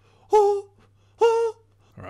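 A man's voice singing short, clipped 'oh!' hits on one steady pitch, twice, about a second apart, as a vocal stand-in for a drum part in a layered a cappella imitation.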